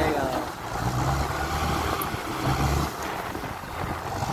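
Diesel engine of a tractor-mounted sugarcane grab loader running under load, its low note swelling and easing a few times as the crane arm works the cane.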